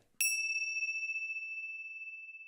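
A single bright chime struck once, its high, clear ring fading slowly over about three seconds. It is an edited transition sound marking a new question title card.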